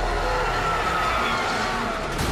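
Action film trailer soundtrack playing: a wavering high tone held over a low steady rumble.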